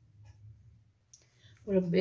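Cooking oil poured from a bottle into a nonstick frying pan: a few faint clicks over a low hum.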